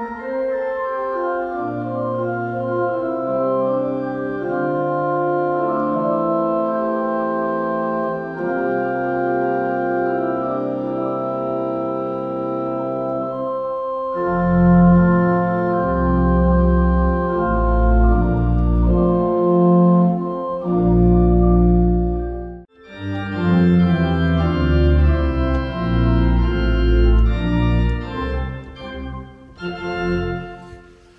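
Electronic church organ playing slow, held chords. About 14 seconds in, deep bass notes join and the playing grows louder. It breaks off briefly near 23 seconds, then carries on with the bass.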